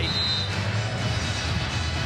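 Arena music over the public-address system with crowd noise, steady throughout, and a brief high steady tone in the first half-second.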